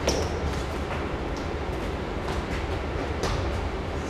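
A football being kicked and knocking on a concrete floor and a door, with a sharp knock right at the start and several lighter knocks after, over a steady low rumble.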